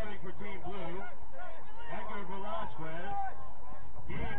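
Players' voices shouting to each other during a soccer game: runs of short, wavering calls, too distant to make out as words.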